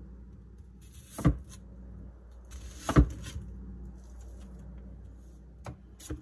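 Chef's knife chopping red onion on a wooden end-grain cutting board: two sharp knocks of the blade striking the board about a second and a half apart, then a fainter one near the end.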